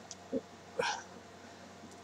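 A person's quick breath in, with a faint mouth click just before it; otherwise quiet room tone.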